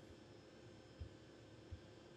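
Near silence: room tone with a faint steady hiss, broken by two short, faint, low thumps, one about a second in and one near the end.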